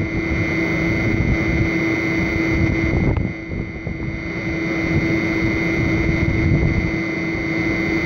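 Irrigation well pump running: a steady motor hum with a higher steady whine above it, dipping briefly about three seconds in.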